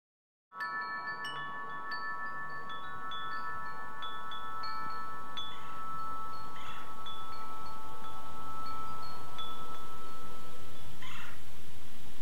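Chime tones ringing: several long held notes with scattered short, higher pings, over a hiss that swells steadily louder.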